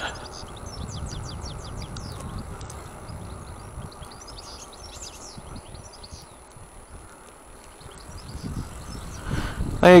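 Steady low rumble of riding noise as an electric bike rolls slowly along a road, with birds chirping faintly in short runs.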